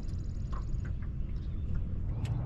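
Electric trolling motor on a small boat running steadily at low speed: a low hum, with a faint high whine that stops about a second in.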